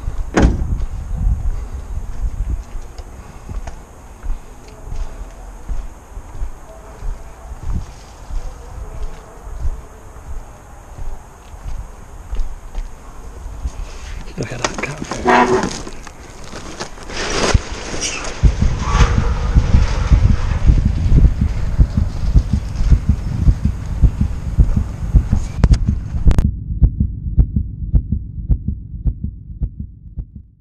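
Rubbish being rummaged through in a skip, with crackling and clattering about halfway through, over the rumble of handling and wind on a body-worn camera. From about two-thirds in, a steady low beat runs under it. Near the end it carries on alone once the camera sound cuts out.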